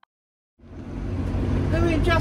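Near silence, then about half a second in the steady low rumble of a motorhome driving, heard inside the cab, comes in suddenly. A woman's voice begins near the end.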